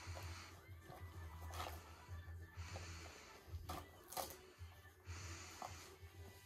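A small dog tearing and nosing at gift-wrapping paper on a present: soft paper rustling in short spells, with a few sharper crackles.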